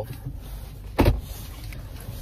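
Steady low car-cabin rumble with a single sharp knock about a second in.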